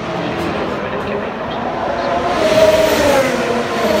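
Formula One cars passing on the circuit, their 1.6-litre turbocharged V6 engines sounding a pitch that falls as each car goes by. The loudest pass comes a little past halfway.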